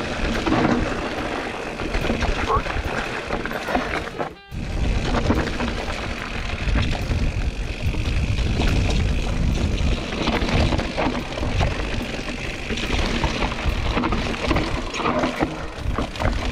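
Mountain bike rattling down rocky singletrack: tyres crunching over stones and the bike clattering, with wind rumbling on the camera microphone. The sound drops out briefly about four and a half seconds in.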